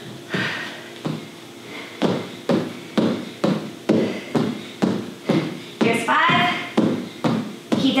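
Sneakered feet landing on a tile floor in a steady rhythm of thuds, about two a second, as the feet jump apart and back together in plank jacks.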